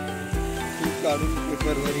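Background music with a steady beat, about two beats a second, over the hiss of small waves washing on a pebble beach.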